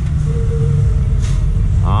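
A steady low rumble with a faint hum joining it for about a second in the middle.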